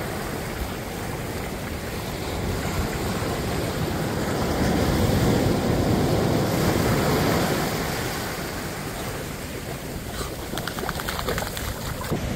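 Ocean surf breaking and washing up the beach, a steady rush that swells to its loudest around the middle and then eases.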